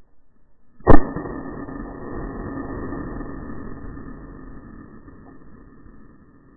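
A single loud shotgun shot about a second in, followed by a noisy tail that fades over about three seconds.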